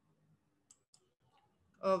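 Two faint computer-mouse clicks about a second apart in a quiet room, then a woman starts speaking near the end.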